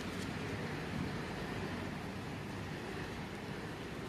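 Steady outdoor background noise: an even hiss with a faint low hum underneath and no distinct events.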